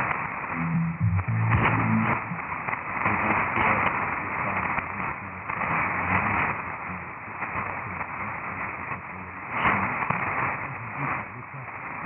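Weak shortwave AM broadcast on 9650 kHz heard through an SDR receiver: mostly static and hiss that swells and fades, with the station's programme audio barely showing through. A short faint snatch of programme sound about a second in.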